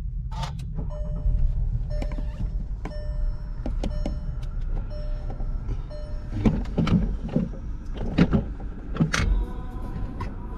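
Inside a Volkswagen's cabin: a steady low rumble, with a short beep repeating about once a second for the first several seconds. A handful of sharp knocks follow near the end.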